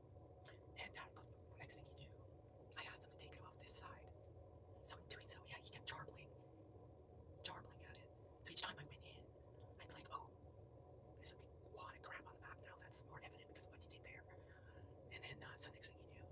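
A woman whispering softly close to the microphone, in short scattered bursts, with brief mouth and lip clicks in between.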